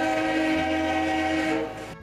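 Passenger train's horn sounding one long steady blast that cuts off just before the end.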